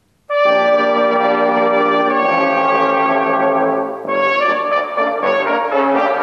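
Brass ensemble of trumpets and trombones playing a piece with a recognisably Jewish melodic character. A long held chord starts about a third of a second in, and shorter moving notes follow from about four seconds.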